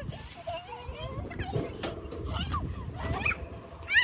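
Young children's voices: short high-pitched squeals and wordless chatter while playing, over a low steady rumble.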